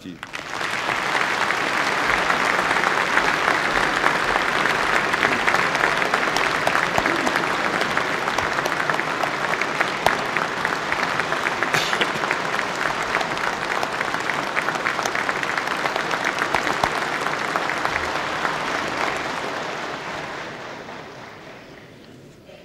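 A large audience applauding: sustained, even clapping from many hands that starts at once, holds steady, and dies away over the last few seconds.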